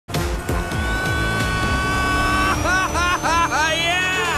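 Film soundtrack mix of music and racing-car sound effects, with a slowly rising whine. About halfway in comes a repeated swooping rise-and-fall pattern, about three swoops a second.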